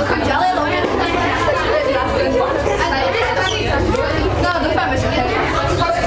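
Several voices chattering and talking over one another, with a steady low hum underneath.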